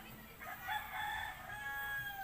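A rooster crowing once, one drawn-out call starting about half a second in.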